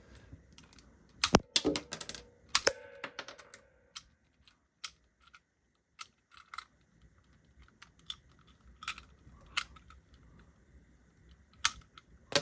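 Plastic clicks and rattles from hands working a Pizza Tossin' Michelangelo action figure's pizza-launching mechanism: a few sharp clicks in the first three seconds, faint scattered ticks after that, and another sharp click near the end.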